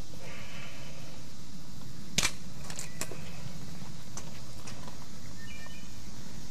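Steady low background hum with a few sharp clicks: one strong click about two seconds in and two fainter ones within the next second.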